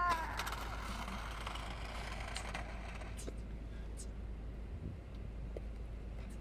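Low steady hum of a car's idling engine, heard from inside the car, with a few faint clicks. A man's shout trails off at the very start.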